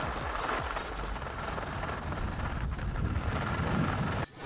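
Skis running at speed over hard groomed snow, with wind rushing over the microphone: a steady, rumbling scrape.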